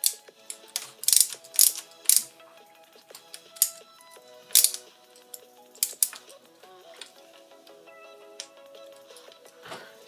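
Sharp clicks and clacks of a hand driver and small screws being worked against the plastic wheelie-bar mount of an RC truck, in irregular groups that are busiest in the first few seconds and sparse later.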